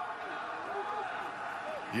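Steady background noise from a televised college football game's field microphones, with a faint distant voice about halfway through.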